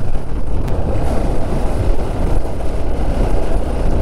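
Steady wind rush on the microphone over the running engine of a Hero XPulse motorcycle being ridden.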